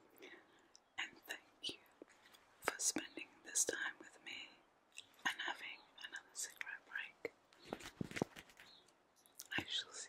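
A woman whispering close to the microphone, with scattered soft clicks between the words.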